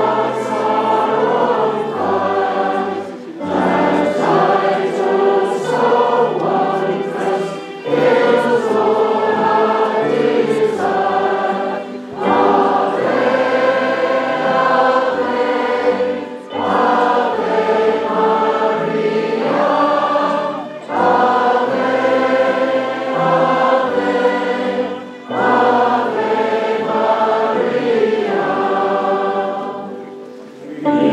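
A choir and congregation sing a hymn in phrases of about four seconds, with short breaks between them, over held low bass notes that change in steps. It is plausibly the entrance hymn as the clergy process in.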